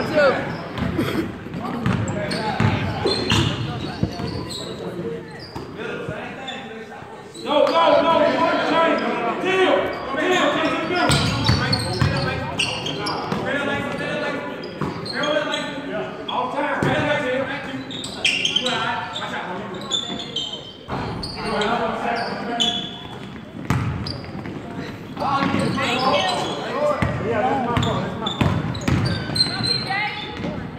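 Basketball game on a hardwood gym court: the ball bouncing and players and onlookers calling out, with voices that grow louder about seven seconds in, all echoing in a large hall.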